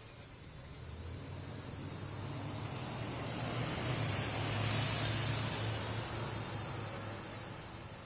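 A road vehicle driving past: its engine hum and tyre hiss grow louder to a peak about five seconds in, then fade away.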